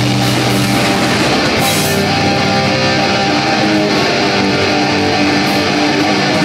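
Live rock band playing loud: electric guitar and bass guitar over a drum kit, with a cymbal crash about two seconds in.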